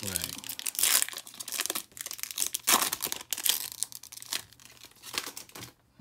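Foil trading card pack wrapper crinkling in irregular bursts as it is opened by hand, dying away just before the end.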